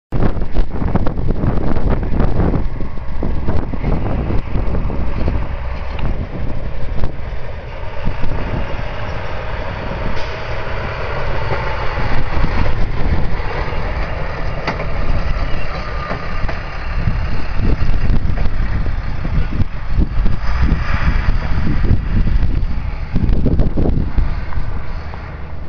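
Hi-rail maintenance truck running along the railway track past the microphone, its engine noise strongest in the middle as it goes by. Heavy wind buffeting on the microphone runs under it.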